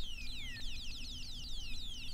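ARP synthesizer playing a quiet passage of rapid, high, repeated downward-sliding bleeps, several a second, like an electronic chirping. A faint low held tone sits underneath.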